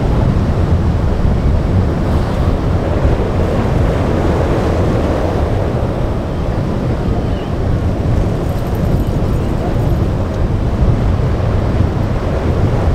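Steady wind rumble on the microphone over the wash of breaking waves and choppy surf.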